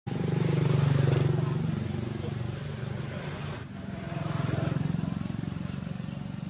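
An engine running steadily nearby, louder about a second in and again near five seconds.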